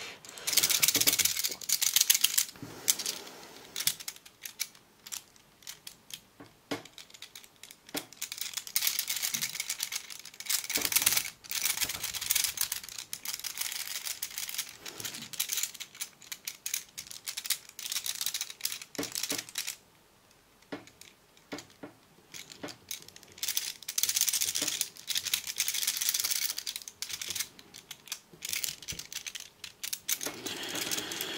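Cast metal puzzle pieces and the ball caught between them rattling and clicking as the puzzle is shaken and twisted in the hands. The clicks come in quick bursts of a few seconds, with pauses and a brief lull about two-thirds of the way in.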